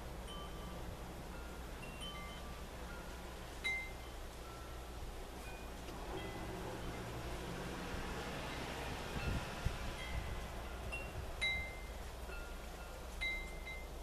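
Wind chimes ringing now and then, single clear notes at several different pitches sounding at irregular moments, over a steady low hum.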